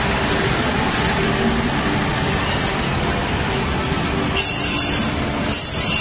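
Steel-wheeled passenger coaches rolling along the track with a steady rumble, and the wheels squealing high twice, briefly, in the second half.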